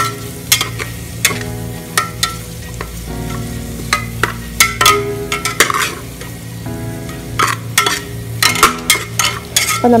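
Sliced onions and red chillies sizzling as they fry in oil in a metal pot, stirred with a slotted metal spatula that scrapes and clicks against the pot at irregular moments.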